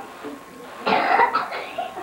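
A brief burst of a person's voice about a second in, lasting about half a second.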